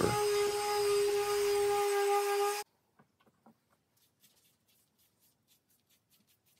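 Ryobi electric detail sander running steadily with a hum against a pine board, sanding between polyurethane coats with 220-grit paper. It cuts off abruptly about two and a half seconds in. Near the end come faint, quick strokes of a foam applicator brushing polyurethane onto the wood.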